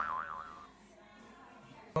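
A wobbling "boing" tone that warbles up and down a few times and fades out within the first second, followed by quiet room tone.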